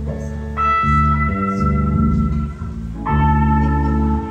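Live band of electric bass, guitars and keyboard playing held chords, the chord changing a few times over a steady bass.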